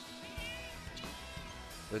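Faint background music with a steady held note, under the quiet sound of a basketball game in progress.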